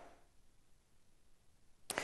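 Near silence with faint background hiss, ending in a single sharp click about two seconds in as the sound cuts over to a new segment.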